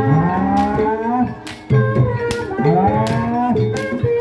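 Live jaranan (kuda lumping) accompaniment music: regular drum strikes over a steady gamelan tone, with a long wailing melody line that slides up in pitch, twice.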